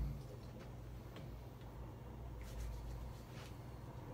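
Hands rubbing together, working in hand sanitizer: faint rubbing with a few soft ticks, over a low steady hum. A brief low thump right at the start.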